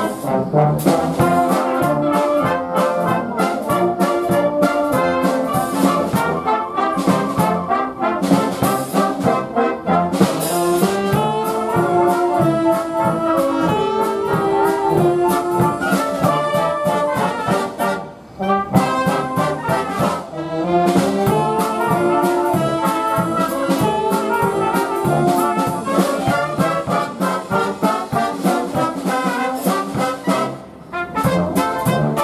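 Military wind band playing: brass (euphoniums, horns, trumpets) and woodwinds (flutes, clarinet) together in full ensemble. The music breaks off briefly a little past halfway and then resumes.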